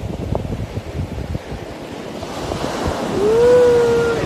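Steady rushing noise that grows louder, with a person's voice drawing out one long note for about a second near the end.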